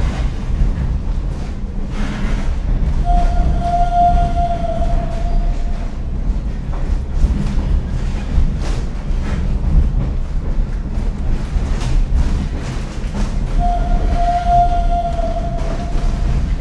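Mine cart rolling on rails: a steady heavy rumble with scattered clacks, and a high metallic wheel squeal twice, about three seconds in and again near the end, each dipping slightly in pitch as it fades.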